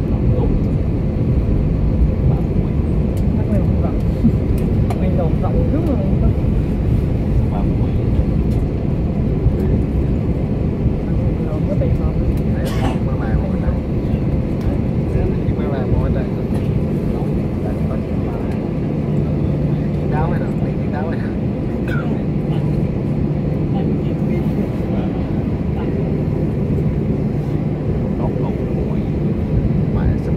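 Steady low rumble of an airliner heard from inside the cabin as it taxis after landing, with faint talking among passengers.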